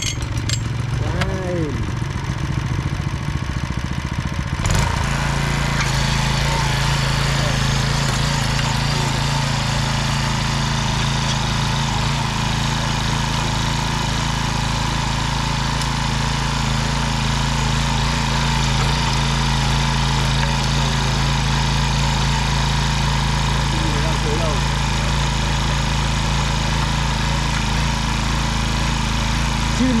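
Yanmar MT3e mini tiller's small petrol engine running as its tines dig into dry soil. About five seconds in it steps up to a steady, louder drone and holds there under load.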